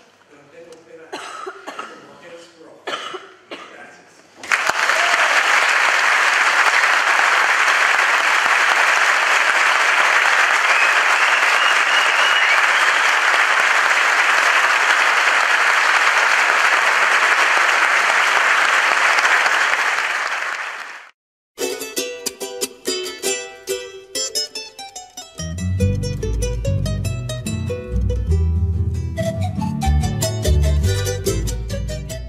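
A large audience applauding steadily for about sixteen seconds, cut off abruptly. Music follows, with a bass line coming in a few seconds later.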